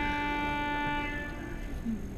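Pipe organ sounding a sustained chord that stops a little over a second in and dies away in the church's long reverberation.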